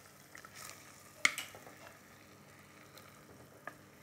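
A wooden spoon scraping thick beef rendang out of a stainless steel saucepan into a ceramic bowl: faint scraping with a few light clicks, and one sharp knock of utensil on metal about a second in.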